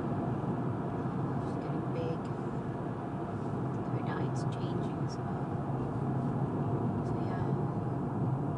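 Steady road and engine noise heard inside a moving car's cabin, even and unbroken throughout.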